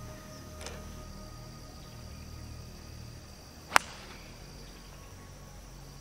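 A golf club striking the ball off the tee: one sharp, short crack about two-thirds of the way in, a shot the golfer says he got a hold of. Insects buzzing steadily in the background.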